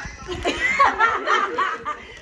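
People laughing and chuckling in a run of short bursts.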